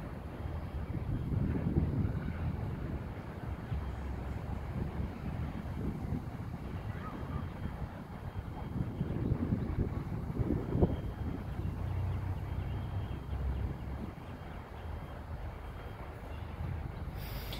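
Wind buffeting the phone's microphone: a low, uneven rumble that swells and fades in gusts.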